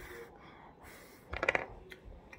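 Crinkling and small clicks of a plastic chocolate wrapper being opened. About one and a half seconds in there is a short, louder, rapidly pulsing burst.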